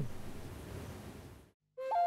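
A steady background hiss fades out over about a second and a half, followed by a moment of silence. Near the end a flute comes in, sliding up briefly into a held note.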